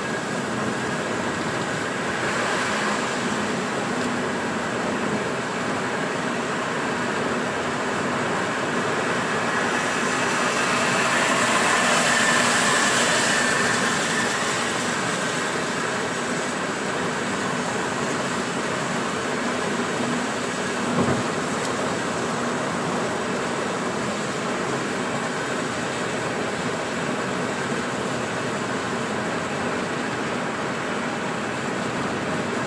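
Inside a car driving on a rain-soaked highway: steady tyre and road noise mixed with rain, swelling louder for a few seconds about twelve seconds in. A single short knock sounds about twenty-one seconds in.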